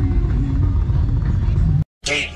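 Open-air motorcycle rally ambience: a steady low rumble with voices talking in the background. It cuts off abruptly just before the end.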